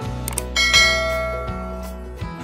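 A bell chime sound effect rings out about half a second in and dies away slowly, over steady background music.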